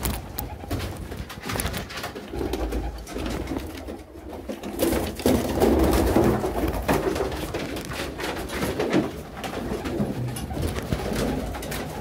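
Domestic pigeons cooing, with scattered clicks and knocks throughout; the cooing is busiest in the middle.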